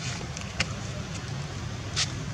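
Steady low outdoor rumble, with two short sharp clicks, one about half a second in and one at the very end.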